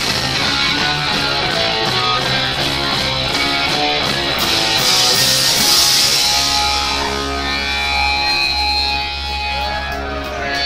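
Hardcore punk band playing live, with electric guitar and drums at full volume. About six seconds in, a low note is held under the guitar.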